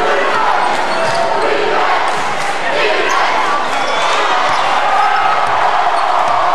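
Basketball dribbled on a hardwood gym floor, repeated bounces under a steady din of crowd voices in the gym.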